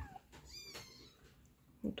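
A cat meowing: one short, high-pitched meow about half a second in.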